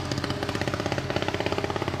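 Sumitomo long-reach crawler excavator's diesel engine running with a fast, even pulsing clatter.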